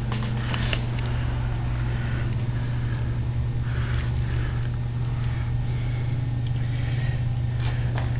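A steady low hum, even in level, with faint scattered rustling above it.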